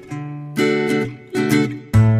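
Background music: strummed acoustic guitar chords, about four strokes in two seconds, each ringing out and fading before the next.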